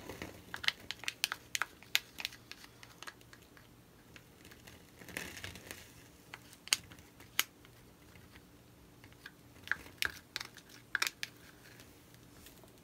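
Thin plastic paint cup crinkling and clicking as gloved hands squeeze and handle it: scattered sharp clicks in short clusters, with a brief rustle about five seconds in.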